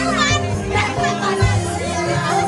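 Loud amplified live music with a woman singing into a microphone, with shrill voices calling out over it.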